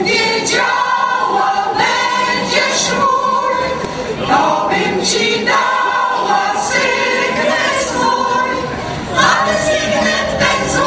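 Mixed choir of men's and women's voices singing.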